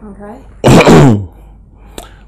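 A person's short, loud, breathy vocal burst that falls in pitch, about half a second in, after a faint murmur: a sneeze-like exclamation.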